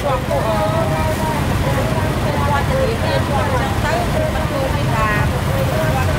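Steady low rumble of road traffic, with people talking over it throughout.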